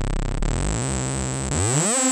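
Korg Electribe 2 sawtooth synth with heavy glide: the pitch slides down, stays low and buzzy for about a second and a half, then glides back up into a held note.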